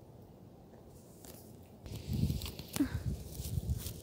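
Faint outdoor quiet, then from about two seconds in soft, irregular low thumps and rustling in grass, like footsteps or hands moving things through the grass.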